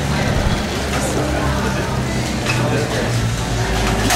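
Busy bar ambience: crowd chatter and voices over background music with a steady bass line.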